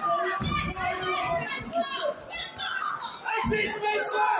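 Several voices from the crowd and corners shouting and calling out over one another at ringside, some of them children's voices, with a few dull knocks underneath.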